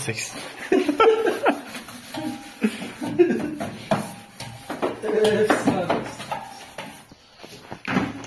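Indistinct talking that the recogniser did not transcribe, running through most of the stretch with short pauses.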